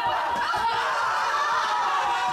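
A theatre audience laughing and chuckling together, a steady mass of overlapping laughter.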